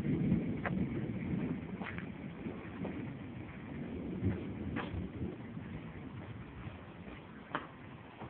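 Distant thunder rumbling low and slowly fading away, with a few faint short clicks over it.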